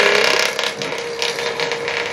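A machine running steadily in the background: a continuous mechanical whir with a fast, even ticking.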